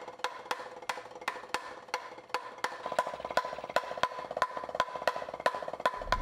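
Drumsticks striking a rubber practice pad in an even rhythm, about three strokes a second, with a fast run of quicker strokes joining in about halfway.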